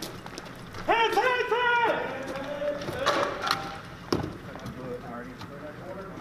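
A man shouts three quick words about a second in, followed by quieter voices, footsteps and gear rustling as men move through a doorway. A sharp knock comes just after four seconds.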